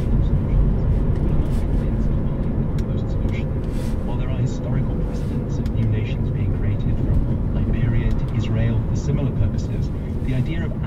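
Steady low rumble of a car's engine and tyres on the road, heard from inside the cabin while driving, with faint speech over it from about four seconds in.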